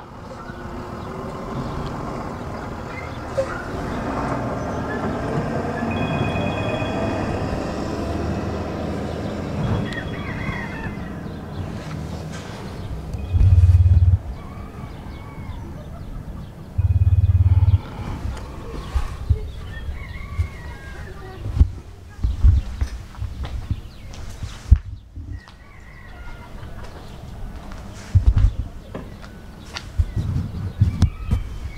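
Outdoor ambience: a steady rush that swells and fades over the first dozen seconds, a few bird chirps scattered through it, and two brief loud low rumbles about a third and a half of the way in.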